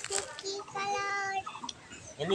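A child's voice calling in a held, sung tone, the longest note lasting about a second in the middle, with shorter sung sounds before it.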